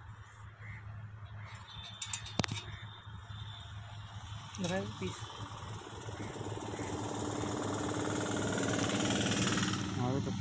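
A motor vehicle engine running, growing steadily louder over the second half. A sharp metallic click comes a couple of seconds in.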